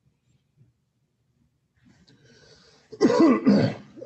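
Near silence for about three seconds, then a man clears his throat: two loud bursts close together near the end.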